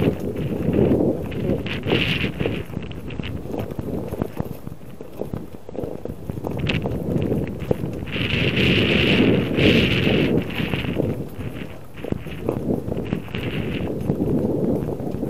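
Bicycle riding over rough, frozen sea ice: the tyres crunch and bump over the uneven surface in a dense, irregular run of knocks. Louder hissing swells come around two seconds in and again from about eight to ten and a half seconds.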